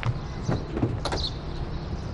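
A few sharp steps and clicks as a car's rear door is unlatched and pulled open, the loudest click about a second in, over a steady low rumble.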